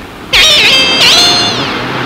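A loud, high-pitched squealing whine that wavers at first, holds its pitch, then slides downward near the end.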